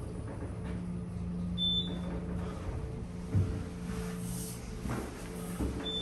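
Otis Gen2 elevator car in operation: a steady low hum from the car, with a single knock about halfway through and two short high electronic beeps about four seconds apart.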